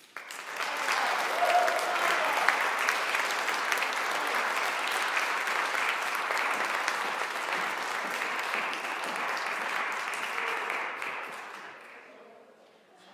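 Audience applauding, starting all at once as the trumpet music ends and dying away near the end.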